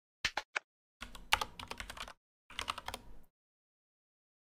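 Typing on a computer keyboard: a few quick keystrokes early on, then two short runs of rapid key clicks about a second long each, with a pause between them.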